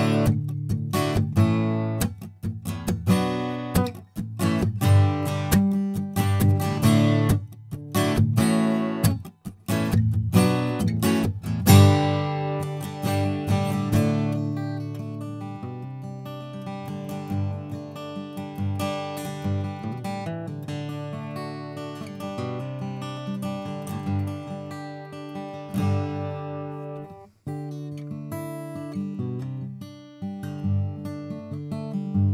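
Yamaha FG800VN dreadnought acoustic guitar with a solid Sitka spruce top, strummed and recorded close through a large-diaphragm condenser mic. For about the first twelve seconds it is played in rhythmic, full strums, then more softly, with chords left to ring.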